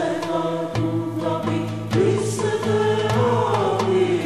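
Music: voices chanting a melody together over low held notes.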